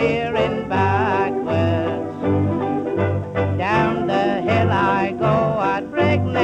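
Band music from a 1930s British comic music-hall song: a lively melody over a steady, pulsing bass beat.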